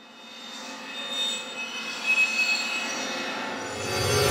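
Cinematic riser sound effect: a swelling whoosh with sustained shimmering tones that builds from near silence over the first second or so. A low rumble comes in near the end, leading into the hit of an animated logo sting.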